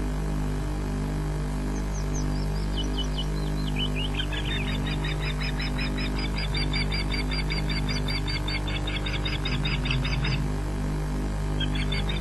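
Osprey calling: a rapid series of high, piping whistled calls begins a couple of seconds in, runs on steadily, breaks off shortly before the end, then starts again. A steady low electrical hum runs underneath.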